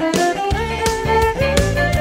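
Cello played with the bow, a melody of held notes over a steady low pulse that starts about half a second in.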